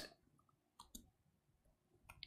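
Near silence with a few faint computer keyboard key clicks about a second in, as text is typed.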